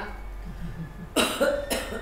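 A person coughing twice, two short, harsh coughs about half a second apart, a little over a second in.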